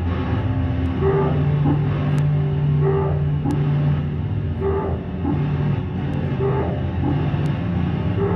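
Improvised drone music: a sustained low electric bass drone processed through effects pedals, under electronics, with a higher tone that comes back in a slow repeating pulse and faint clicks.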